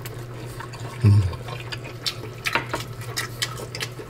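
Wet, clicky mouth sounds of a person chewing hot food, over a steady low hum. A short low 'mm' comes about a second in.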